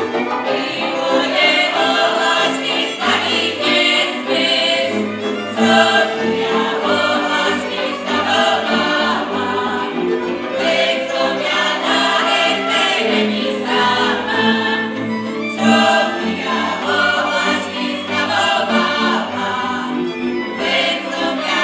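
Slovak folk ensemble singing a Horehronie folk song together in chorus, phrase after phrase, with a fiddle band accompanying.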